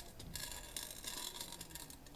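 Faint, light ticking patter of glass frit grains sprinkled from a jar into a ceramic bisque tile mold.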